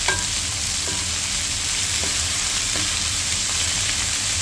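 Sliced bitter melon, tomato and onion sizzling as they sauté in a frying pan, with a wooden spatula stirring and knocking against the pan a few times.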